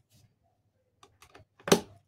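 Screwdriver tip clicking against a hard plastic bucket: a few light clicks about a second in, then one louder knock near the end.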